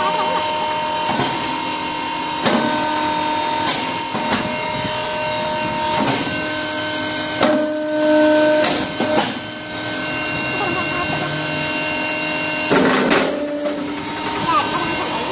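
Hookah charcoal briquette press machine running: a steady hum made of several held tones, broken by sharp knocks and clanks every second or so as it works.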